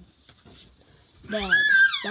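After a quiet pause, a loud, high-pitched vocal squeal about 1.3 s in, sliding steeply up in pitch and holding high briefly.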